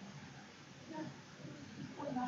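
Faint room noise, with a brief, quiet murmur of a voice about a second in.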